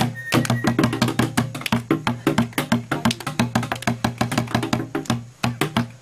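A cylindrical hand drum held under the arm and beaten with a stick, playing a fast, steady rhythm of sharp strikes, several to the second.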